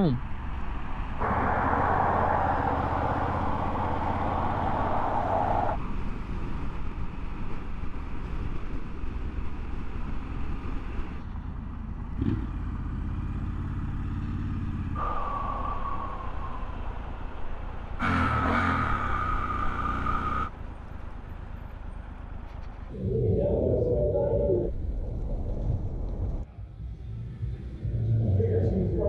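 Riding sound of a Triumph Scrambler 1200 on the move in traffic: a steady low engine rumble under heavy wind noise on the microphone. The sound changes abruptly several times, with brief higher steady tones midway.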